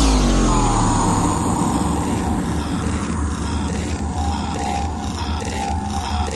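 Electronic breakbeat music in a DJ mix: a synth swoosh falls away at the start over a sustained deep bass, and the drum beat comes back in about halfway through.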